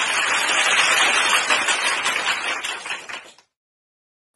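Applause from a crowd, dense and steady, tapering off and cutting out about three and a half seconds in.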